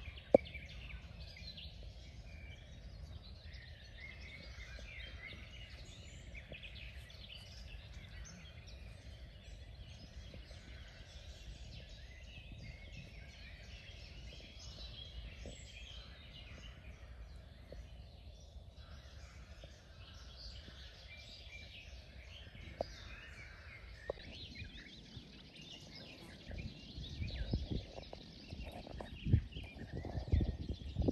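Several songbirds singing together in a marshland chorus of many short overlapping chirps and phrases, over a steady low rumble. Louder low bumps come in over the last few seconds.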